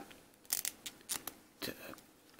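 A few short, sharp plastic clicks and taps as a small Loyal Subjects Lion-O figure and its plastic sword and claw-glove accessories are handled.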